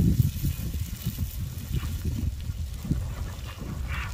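Low, irregular crackling and rumbling from the front of a fast-advancing lava flow as it pushes over and burns grass.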